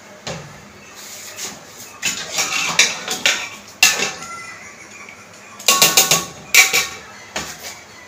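Metal spoon knocking and scraping against a metal cooking pot in a string of clanks, the loudest cluster about six seconds in, as rice is put into the pot.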